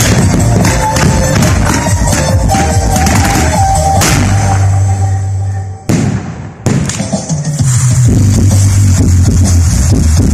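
Loud music playing at a fireworks show, with firework bangs mixed in. About halfway through the music drops away for under a second between two sharp bangs, then comes back with a strong bass line.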